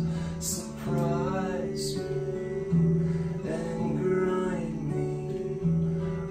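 Slow guitar music from two guitars, with some notes gliding in pitch.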